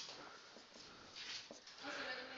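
Whiteboard marker squeaking and scratching against the board in short strokes as vertical bars and an equals sign are written, faint, with the longest stroke about a second in.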